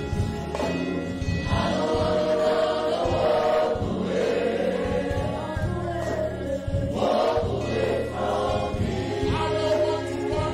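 A church worship team and congregation of men and women singing a gospel worship song together, with instrumental accompaniment underneath.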